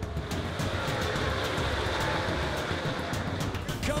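NASCAR race trucks' V8 engines running at speed on the track, a steady dense engine noise with a slowly falling pitch, mixed under background music.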